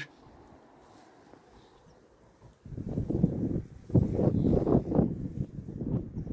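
Wind buffeting the phone's microphone: irregular low rumbling gusts that start about two and a half seconds in after a quiet stretch.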